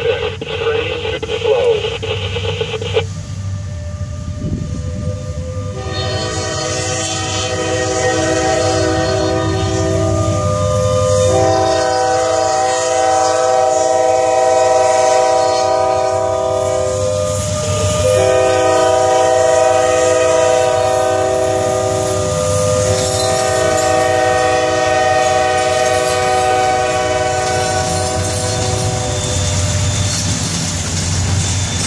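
Norfolk Southern freight train passing, with a steady low rumble and wheels clicking over the rails. From about six seconds in, a diesel locomotive's multi-chime air horn sounds loudly in four long blasts with brief gaps between them.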